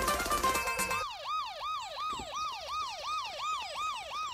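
Recorded dance music: about a second in, the beat drops out and a siren-like sound effect takes over, a wailing tone that rises and falls in quick sweeps about three times a second, before the full beat comes back at the end.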